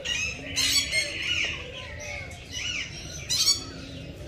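Captive birds squawking: four or five short, harsh, high-pitched calls in quick succession.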